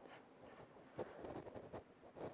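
Faint scraping and light clicks of a handle being screwed by hand onto the threaded quick-release adapter of a GNSS range pole, starting about a second in after near silence.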